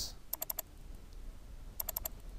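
Computer mouse clicks: two quick double-clicks about a second and a half apart, opening folders in a file dialog.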